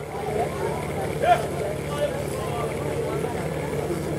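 A steady low hum runs through, under faint background voices, with a brief voice sound about a second in.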